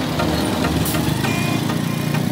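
Small motorcycle engine running steadily, heard close up.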